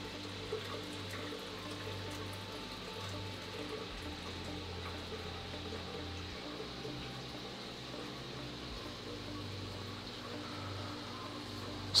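Steady faint room noise: a low hum with an even hiss over it, from the running equipment of a room full of vivariums.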